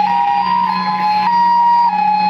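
A two-tone hi-lo siren from a convoy escort vehicle, stepping back and forth between two pitches about every half second, over a steady low hum.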